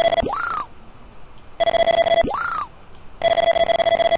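Electronic feedback tones from the measuring arm's software during continuous point capture. A steady buzzy tone runs while points are being taken and ends in a quick rising chirp as each point cloud closes. This happens twice, and the buzzy tone starts again about three seconds in.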